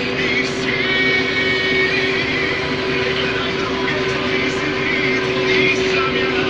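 Case IH 1620 Axial-Flow combine running steadily under load while harvesting corn, a constant machine drone with a steady hum, heard from the operator's seat. Music plays faintly underneath.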